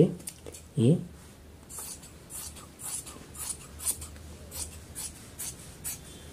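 Large tailor's shears cutting through trouser fabric on a paper-covered surface: a run of short, crisp snips, about two a second, starting about a second and a half in.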